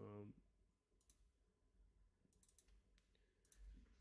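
Near silence with a few faint, scattered clicks from working a computer, made while searching for a file. A brief faint murmur of voice comes at the very start.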